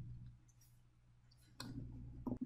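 Near silence, broken by a faint click about one and a half seconds in, followed by a couple of softer ticks.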